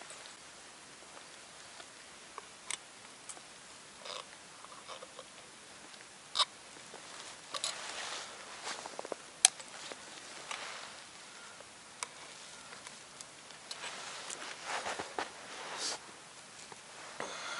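Hands working at a snowy wooden trap set to free a caught marten: faint rustling of cloth and snow with scattered sharp clicks and knocks, the sharpest about six and nine seconds in.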